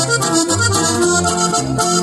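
Norteño-style duo music: a diatonic button accordion plays the melody over an acoustic guitar keeping a steady bass-and-chord rhythm, with no singing.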